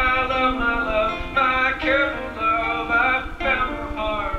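A live song: a voice singing held and gliding melodic notes with no clear words, over band accompaniment.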